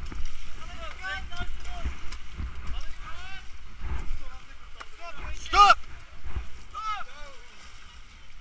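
Rafters' voices calling and shouting over river water and wind buffeting the microphone, with one loud yell a little past halfway.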